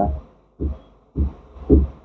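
A man's voice in a few short, low murmured sounds without clear words, after the end of a sentence.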